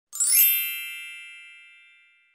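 Intro logo sting: a quick upward shimmer of bright tones that settles into a ringing chime and fades away over about two seconds.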